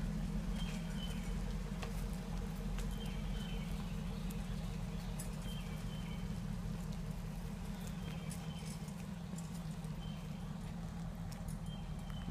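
A Hummer SUV's engine running steadily at a slow crawl, a low hum, with light clicks and clatter throughout.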